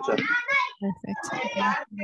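Speech only: several people's voices over a video call answering 'perfect' and 'yes, sí'.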